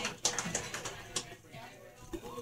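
Lull in a small room: faint background voices with scattered light clicks and knocks.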